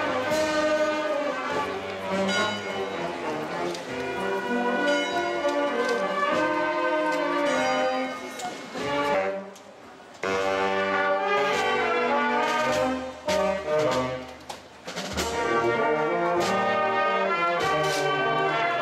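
A marching brass band plays a march, with sousaphones, trumpets and saxophones. The music drops away briefly about halfway through, then comes back suddenly at full level.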